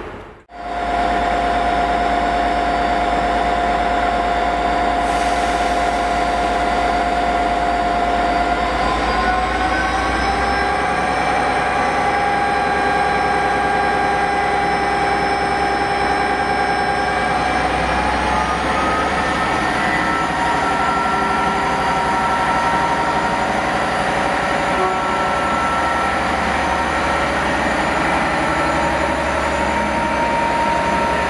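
Class 57 diesel locomotive 57313 running with its EMD 645 V12 two-stroke engine, a loud steady engine note with a whine. The note steps up in pitch twice, about nine and eighteen seconds in.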